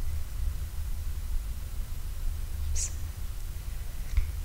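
Room tone of a pause in a talk: a steady low hum through the sound system, with one short soft hiss nearly three seconds in.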